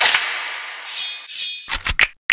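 A drill instrumental drops out in a breakdown: the bass and drum loop stop, and a single hit rings and fades away. About a second in come a couple of rising high swishes, then a few quick stuttered hits near the end.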